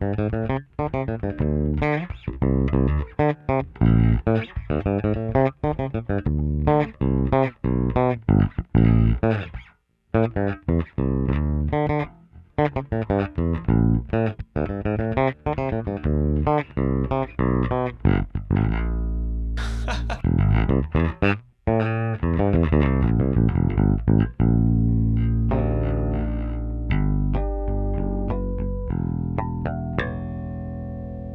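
Harley Benton MV-4MSB short-scale bass played fingerstyle with the bridge pickup soloed and the tone fully open, recorded direct. A run of quick plucked notes breaks off briefly about ten seconds in, then gives way to longer ringing notes near the end.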